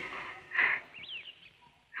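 Birds calling twice in outdoor ambience: a short harsh call about half a second in, then a brief high chirp that rises and falls.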